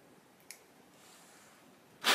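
Near silence: room tone, with one faint sharp click about a quarter of the way in.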